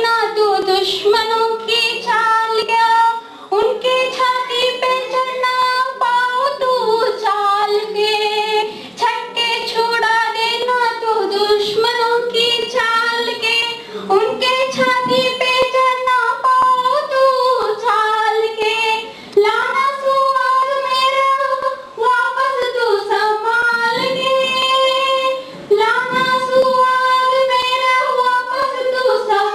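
A single high female voice singing solo, holding long notes in phrases with short breaks between them.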